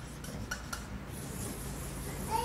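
Felt-tip marker drawing loops on flip-chart paper: a faint scratchy rub, with a couple of light ticks of the tip on the paper about half a second in.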